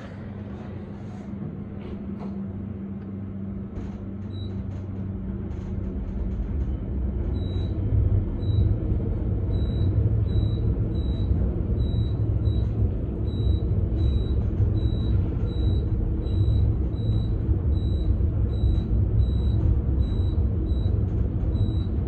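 Cab of an Otis Elevonic 401 traction elevator, modernized with a Kone ReVolution drive, climbing at speed (rated 900 ft/min): a steady low rumble of ride noise that grows louder over the first several seconds. From about four seconds in, a short high Kone floor-passing beep sounds as each floor goes by, more than once a second.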